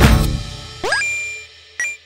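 Background music ends on a loud hit that dies away over the first half second, followed by animation sound effects: a quick upward swoop about a second in that lands on a bright ding, then a second short ding near the end.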